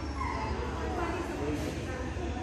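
A dog whining, a few short high cries in the first half, over the chatter and hum of a large hall.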